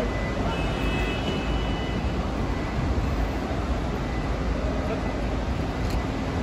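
Steady outdoor traffic din at an airport kerb, with a constant low rumble and faint indistinct voices.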